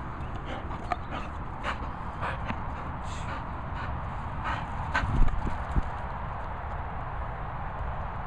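A working cocker spaniel moving about close to the microphone on grass, heard as short irregular clicks and rustles over a steady low rush. A few louder low knocks come about five seconds in.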